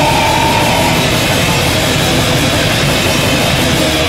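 A live band playing loud, heavy rock music with drums, dense and unbroken throughout.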